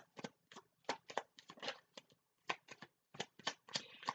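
A deck of tarot cards being shuffled by hand: a quiet, irregular run of quick card snaps and clicks, several a second.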